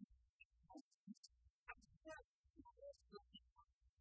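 Near silence, broken only by faint, scattered blips and low rumbles.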